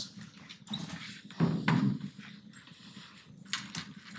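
Lecture-room noise while students work at their laptops: scattered small clicks and rustling, with a brief louder sound about a second and a half in and a few sharp clicks near the end.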